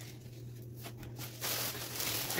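Juice cartons being handled and set down in a row on a counter: a few light knocks, then a soft rustle in the second half, over a low steady hum.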